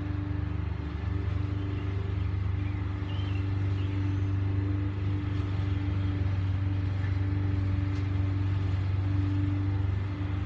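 A steady low mechanical hum, like a motor running, holding one constant pitch, with a couple of faint high chirps about three seconds in.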